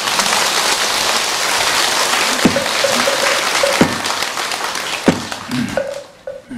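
Audience applauding at the end of a talk: dense, steady clapping that starts at once and dies away near the end.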